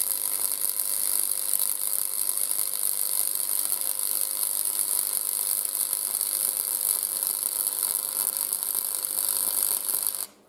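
Flux-cored wire welding arc from a Parkside PFDS 120 A2 gasless welder, crackling steadily through one long continuous bead, with a faint steady tone underneath.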